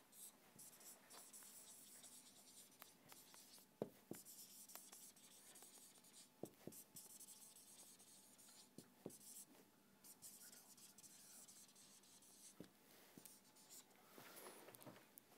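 Faint sound of a marker writing on a whiteboard: soft strokes of the pen tip, with a few light ticks as it meets the board.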